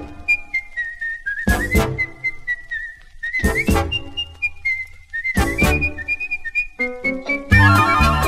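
A whistled melody line, wavering slightly in pitch, carries the tune almost alone over a swing big band that only punctuates with a few short chords. The full band comes back in near the end.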